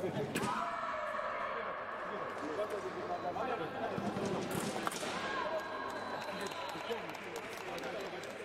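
Indistinct voices echoing in a large sports hall, with a sharp knock about a third of a second in and another just before five seconds.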